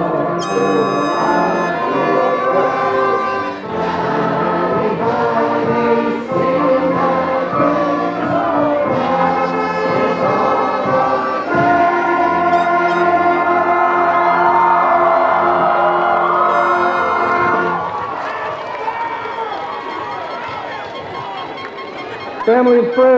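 A school band and orchestra with brass playing the alma mater while the crowd sings along. The music ends about four seconds before the end, leaving quieter crowd noise.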